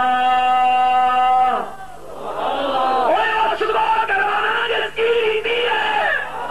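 A man's voice chanting in a drawn-out melodic style: one long held note that breaks off about a second and a half in, then after a brief dip more melodic chanting with rising and falling pitch.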